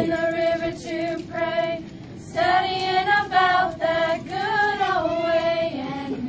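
A group of girls and young women singing together in unison, holding long notes in phrases with a short pause about two seconds in.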